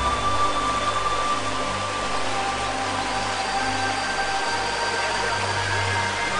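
A steady rushing noise of flowing river water, with sustained ambient music tones and a low drone held underneath.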